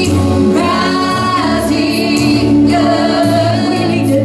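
Live worship song: women's voices singing into microphones over instrumental accompaniment, with long held notes.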